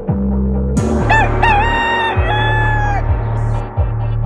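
A rooster crows once, starting about a second in: a single cock-a-doodle-doo of about two seconds that ends on a slightly lower held note. It plays over an instrumental hip-hop beat with deep, sustained bass notes.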